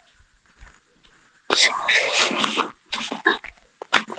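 A man's voice muttering and whispering under his breath: a quiet first second and a half, then about a second of loud breathy whispering, a few short murmured fragments, and one sharp click just before the end.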